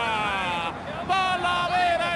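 Male football commentator's excited voice: a long drawn-out call falling in pitch, then a brief pause and more quick speech.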